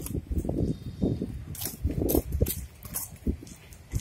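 Quad roller skate wheels rumbling over rough concrete, with a few sharp scuffs and clicks scattered through it.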